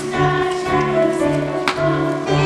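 A choir singing in sustained, held notes with instrumental accompaniment and a pulsing bass line.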